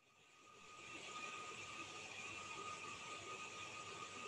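Faint, steady hiss of background noise from an open microphone on a video call, fading in over about the first second. A faint, high, steady tone runs through it.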